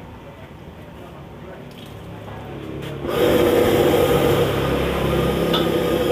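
A gas wok burner turned up high: a quiet low hum swells gradually, then about three seconds in jumps to a loud, steady roar with a humming tone in it.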